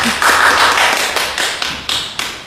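Audience hand-clapping, irregular and not very hearty, tailing off toward the end.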